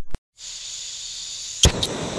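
Propane blowtorch sound effect: a steady hiss of gas and flame starts about half a second in, as the torch is switched on by accident. Near the end come a sharp click and a fainter second click.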